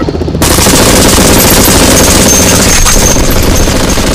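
Sustained automatic gunfire sound effect: a dense, rapid, loud rattle of shots that starts about half a second in and keeps going without a break.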